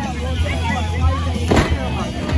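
Ringside crowd voices and shouts over a low steady rumble, with one sharp thud on the wrestling ring about one and a half seconds in.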